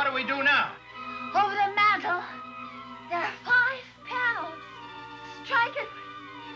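Suspenseful orchestral film score: sustained string notes held underneath, with short wavering, gliding phrases rising and falling over them every second or so.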